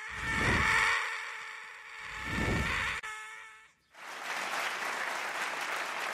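Cartoon soundtrack: a sustained, steadily pitched noise that swells and fades twice. About four seconds in it cuts to a studio audience applauding.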